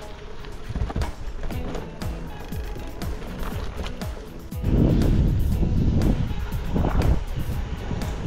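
Background music over the rolling and rattling of a bicycle on a dirt road, with many short clicks and knocks. About halfway through, a louder low rumble of wind and road noise rises under it.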